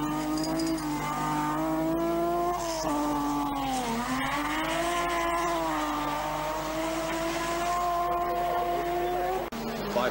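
Rally car engine pulled to high revs, its note rising and held, dipping once about four seconds in before climbing back and holding steady; the sound drops out briefly near the end.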